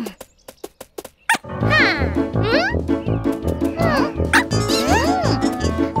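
A quick run of sharp clicks in the first second and a half, then bouncy children's cartoon music with a steady beat. Over the music, cartoon characters make wordless, squeaky vocal sounds that glide up and down in pitch.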